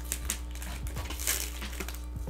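Hands handling a parcel wrapped in brown paper and packing tape: scattered crinkles, rustles and small taps of the paper and tape, over a steady low hum.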